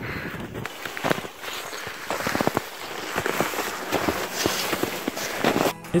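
Boots crunching through snow in a run of irregular steps.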